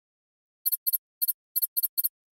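An animation sound effect of six quick, high-pitched double chirps, each a short squeak in two parts, starting a little over half a second in.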